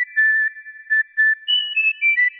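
A whistled tune of short, clear, high notes, mostly repeating one pitch, with a few higher notes near the end.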